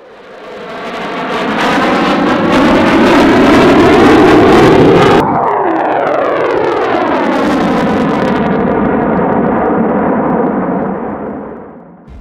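Jet fighter flying past. The engine noise builds over the first couple of seconds and runs loud and steady. About five seconds in it changes abruptly, and the pitch slides downward as the jet moves away, fading near the end.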